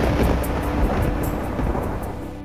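A rolling thunder sound effect, deep and loud, fading slowly, with the song's music still faintly sounding underneath.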